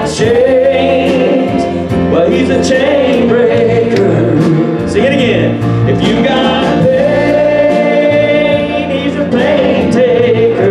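Live church worship band playing: drum kit and electric guitar, with a man singing lead into a microphone and a woman singing along.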